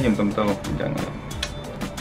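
A man talking, with background music running under his voice.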